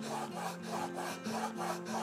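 Steel chisel in a roller honing guide being pushed back and forth on a wet 1000 grit ceramic waterstone, a steady, even rasping of steel on stone. It is honing a 30 degree micro bevel on the chisel's edge.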